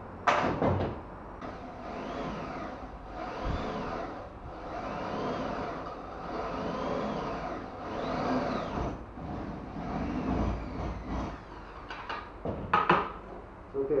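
Tools being handled on a wooden workbench: a sharp clatter at the start, then a run of regular strokes about a second apart, and more sharp clatters near the end.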